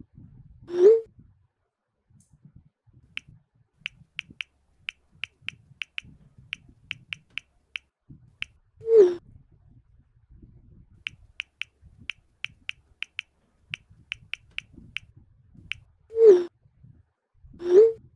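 Smartphone messaging sounds: four short, loud falling tones, one as each chat message arrives or is sent. Between them, two runs of light keyboard taps, a few a second, as replies are typed.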